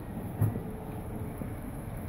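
Steady low background noise of a shop interior, with one soft low thump about half a second in.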